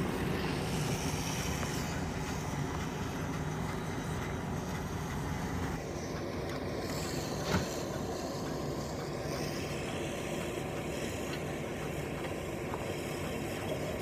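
Steady rumble and hiss of a fire engine running at a fire scene as a hose sprays water, with one brief sharp knock about halfway through.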